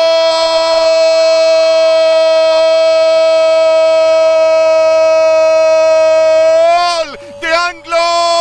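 Football commentator's long, drawn-out goal cry, 'gooool', shouted as one held vowel at a steady pitch for about seven seconds. It falls off near the end and gives way to quick excited words.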